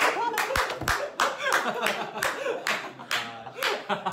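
Hands clapping in a quick run, about four claps a second, stopping near the end, mixed with laughing voices.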